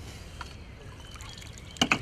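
Water trickling quietly, then a short burst of splashes near the end as a small fish is netted and the landing net is lifted out of the lake.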